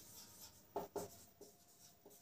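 Marker pen on a whiteboard writing a word: a few short, faint strokes, about a second in.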